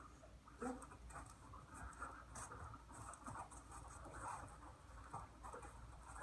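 Faint, irregular pattering and scuffing of a person's footsteps and a dog's paws moving over foam floor mats.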